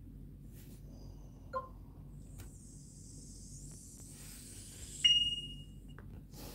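Fingers handling a phone right at its microphone: a faint click, a high rubbing hiss, then a sharp tap about five seconds in that rings briefly.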